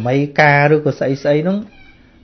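A man's voice speaking, with one long drawn-out syllable that rises in pitch about half a second in, then shorter syllables.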